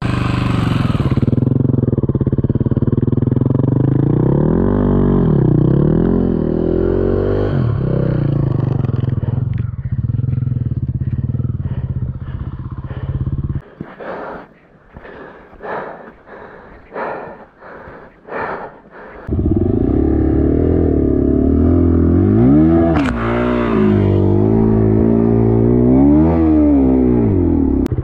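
Dirt bike engine revved repeatedly in rises and falls as the bike is worked up a steep muddy climb. About halfway through the engine sound drops away for several seconds, leaving a few scattered knocks, then the revving resumes.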